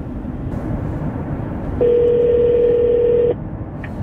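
A telephone ringback tone over the car's hands-free speakers: one steady ring about a second and a half long, starting near the middle, over road noise in the moving car's cabin. It is the outgoing call ringing before the shop's automated line answers.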